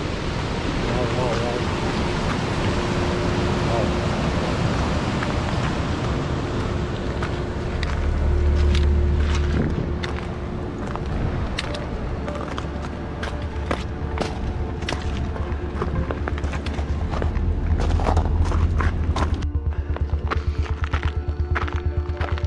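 Wind buffeting the microphone, with footsteps crunching and knocking on loose stony ground that become frequent in the second half.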